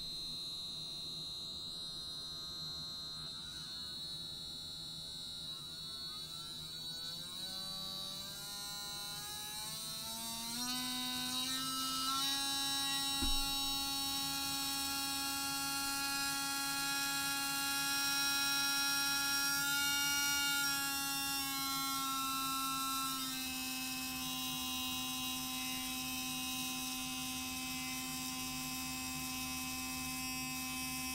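Small electric motor of a handheld adjustable rotary tool running with a steady whine, spinning a roofing nail with a magnet glued to its tip. The pitch rises over several seconds as the speed is turned up, then holds steady, dropping slightly about three-quarters of the way through; a single click partway through.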